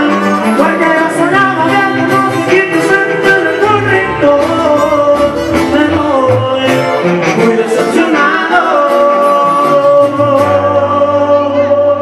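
Live sierreño-style band music: acoustic twelve-string guitars strummed over a tuba bass line, with singing.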